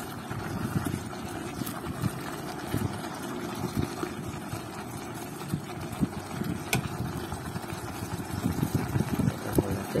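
Beef aom with spring onions stirred in an electric pot with a plastic spatula: irregular soft knocks and scrapes over a steady low rumble, busier near the end as basil leaves go in.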